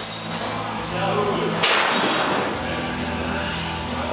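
A heavily loaded barbell set back into the bench-press rack with a single sharp metallic clank about one and a half seconds in, over a steady low hum.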